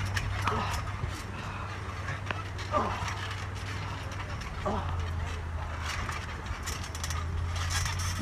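Two wrestlers grappling on a trampoline: a few faint, short grunts or voice sounds and scattered light knocks from the trampoline, over a steady low hum.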